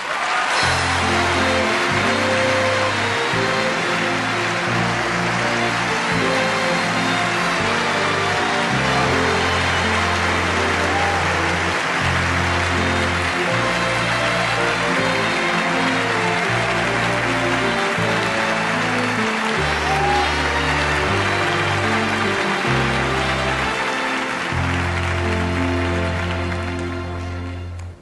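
Orchestra playing an entrance tune under loud, sustained audience applause, both fading out near the end.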